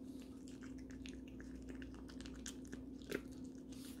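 Long-haired Chihuahua puppy eating dry kibble from a stainless steel bowl: faint, quick crunching and small clicks, with one sharper click about three seconds in. The puppy is gobbling its food too fast.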